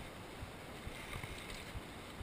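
Orange Five full-suspension mountain bike rolling fast down a gravel singletrack: a steady rush of tyre and wind noise with a few faint rattles from the bike, heard through a GoPro camera's housing.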